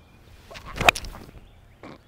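A golf iron swung through with a rising swish, striking the ball with one sharp click a little before a second in.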